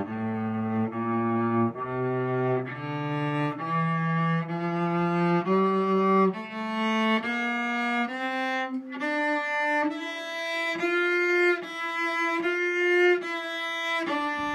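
A cello playing a slow ascending F major scale, one separate bow stroke per note, with each note held a little under a second. The pitch climbs step by step and reaches its top note near the end.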